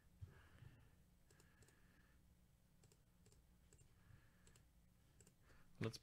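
Near silence: faint room tone with a few scattered light clicks.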